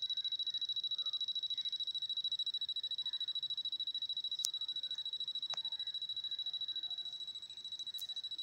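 A steady high-pitched electronic whine that pulses rapidly and evenly, with two faint clicks about a second apart in the middle.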